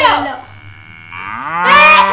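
A long, drawn-out vocal cry that rises in pitch about a second in, then holds steady and loud.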